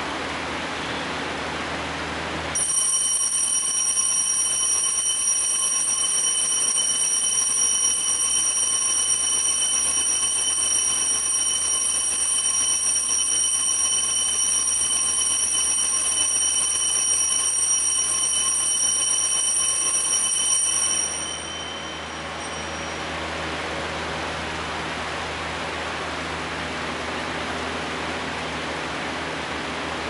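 Altar bell rung continuously at the elevation during the consecration of the Mass: a steady high ringing that starts a few seconds in and stops abruptly about two-thirds of the way through, leaving a quieter hiss.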